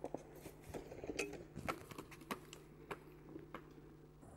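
Faint irregular clicks and knocks, a dozen or so over about three and a half seconds, from a wheeled summer luge sled being pushed off at the start of its track.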